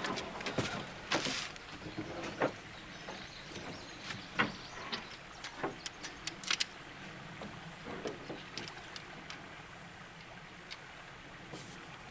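Scattered knocks, clunks and clicks of someone moving about a small jon boat and handling gear, thickest in the first seven seconds and sparse after, over a faint steady hiss.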